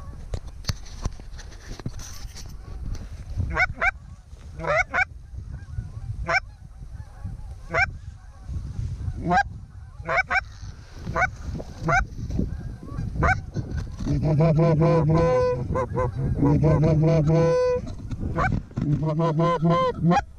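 Canada goose honks and clucks: single spaced calls for most of the time, then a rapid, continuous run of calls in the last six seconds as a flock comes in.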